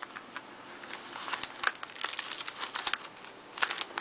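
Clear plastic protector sleeve crinkling and crackling as a decorated paper envelope is slid into it and handled, in quick irregular bursts of rustle.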